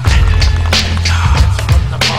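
Music with a heavy bass line and a steady drum beat.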